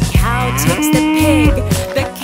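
A cartoon cow's moo, voiced by a person: one long call that slides and then holds steady. Backing music with a steady bass runs under it.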